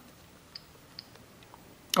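Two faint clicks about half a second apart from the keypad buttons of a Vixen Starbook Ten telescope hand controller being pressed, over quiet room tone.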